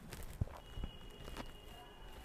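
A few faint taps or clicks over low room noise, with a faint high steady whine coming in about half a second in.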